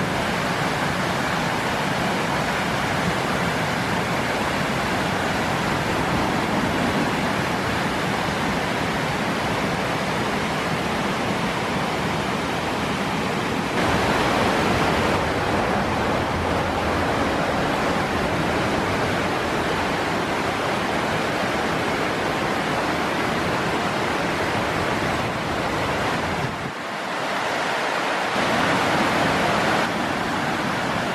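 Mountain stream rushing loudly over rocky cascades and rapids as a steady white-water noise. It gets a little louder about halfway through and dips briefly a few seconds before the end.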